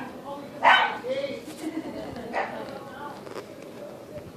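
A puppy giving a short, loud yip a little under a second in, followed by softer whining and a second, weaker yelp later on.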